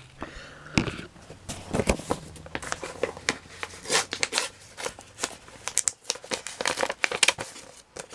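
Paper mailing envelope being opened and handled: irregular crinkling and rustling of paper with small tearing sounds.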